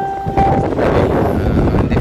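Loud wind buffeting the microphone. A ringing, bell-like tone fades out about half a second in.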